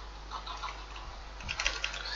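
Scattered light clicks of a computer keyboard and mouse during page layout work, faint over a steady low electrical hum.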